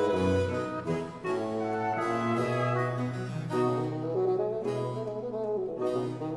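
Baroque chamber music for reed instruments and basso continuo: chalumeau, oboe and bassoon melodies interweaving over a held low bass line, with cello and harpsichord continuo.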